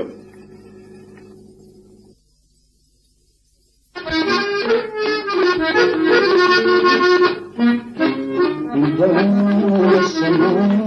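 A faint hum fades into a short near-silence, then about four seconds in a button accordion starts playing, a tune over sustained chords that carries on loudly.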